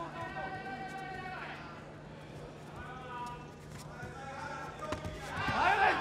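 Shouts and calls from the hall, with a loud burst of shouting near the end as the fighters exchange kicks. Scattered dull thuds of bare feet stepping and striking on the taekwondo mat, over a steady low electrical hum.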